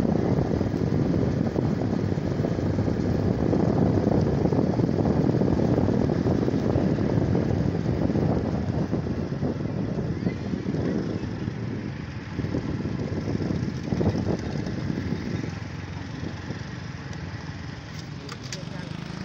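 Motor scooter riding along a road: a steady engine and road rumble mixed with wind on the microphone, fading as it slows in the last few seconds.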